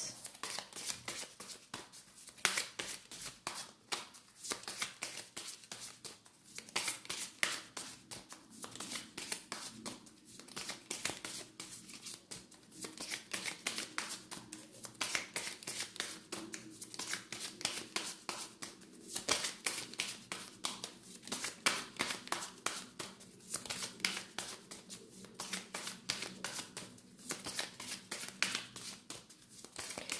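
A deck of tarot cards being shuffled by hand at length: a continuous run of quick, crisp card clicks and flutters.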